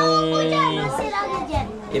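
Speech only: a man's long drawn-out hesitation sound, with children talking and playing around him.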